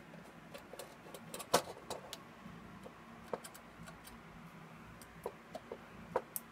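Faint, scattered small metal clicks and taps from a precision screwdriver working a screw out of a car stereo head unit's sheet-metal chassis and from the unit being handled; the sharpest click comes about a second and a half in, with a few more near the end, over a faint steady hum.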